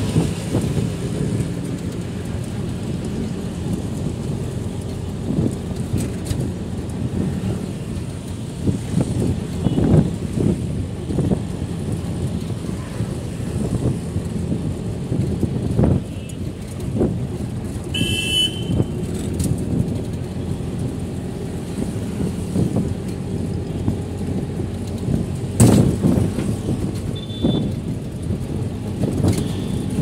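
Engine and road noise of a moving vehicle in city traffic: a steady low rumble with occasional knocks, and a brief high horn toot about eighteen seconds in.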